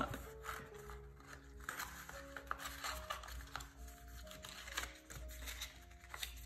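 Soft background music of slow held notes stepping from pitch to pitch, with light paper rustles and crinkles now and then as a folded paper letter's flap is tucked in.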